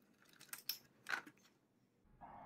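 A few faint clicks and rattles of a plastic wiring clip and battery casing being worked loose by hand as the clip is wiggled off the scooter's batteries.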